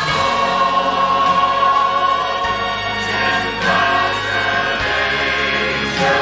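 Choir singing with instrumental accompaniment, slow held chords whose bass note changes about every two and a half seconds.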